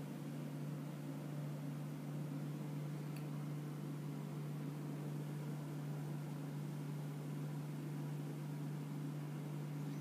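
Steady low hum with a faint even hiss, unchanging throughout: background room noise with no distinct event.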